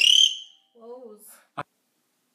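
A person makes a loud, high-pitched squealing noise with the mouth: a single shrill note that fades out within about half a second. A faint brief murmur and a click follow.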